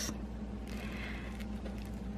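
Quiet room tone with a steady low electrical hum, and a faint short swish about a second in.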